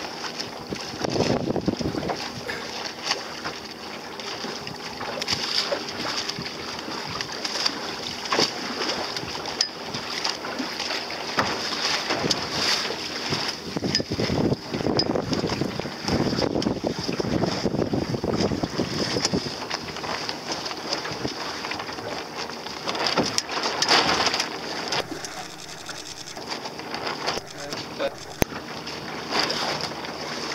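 Wind buffeting the microphone over water splashing and sloshing against a small boat's hull, swelling and easing in gusts.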